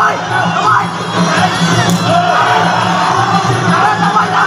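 Live ringside fight music with drumming and a wavering melody, under a crowd shouting and cheering.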